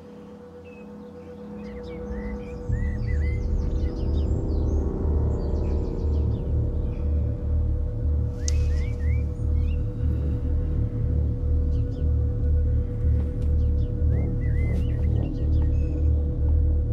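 Drama score music: a sustained tone swells up over the first few seconds, then a deep, evenly pulsing bass joins about three seconds in and carries on steadily.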